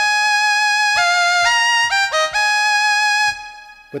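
Casio CZ-101 phase-distortion synthesizer playing a short run of bright, high chords, the notes changing every half second or so. The chords stop about three seconds in and ring away.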